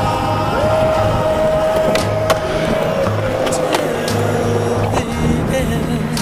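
Skateboard wheels rolling on smooth concrete as the skater pushes along, with a few sharp clacks from the board. Underneath is a song with a steady pulsing bass beat and a long held note.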